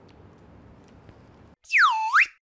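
Faint room noise, then near the end a loud, whistle-like comedy sound effect that glides steeply down in pitch and levels off low.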